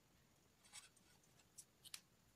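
Faint scratching of a pen on paper as a few short words are written, in short strokes about halfway through and again near the end.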